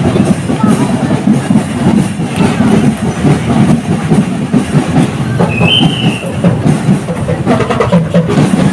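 Parade drums playing amid loud, rumbling street noise, with a brief high tone about six seconds in.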